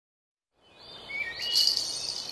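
Silence, then a birdsong and insect ambience fading in about a second in: short bird chirps over a steady high cricket-like buzz, growing louder.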